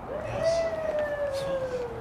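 A single long, drawn-out cry held for about two seconds, slowly falling in pitch.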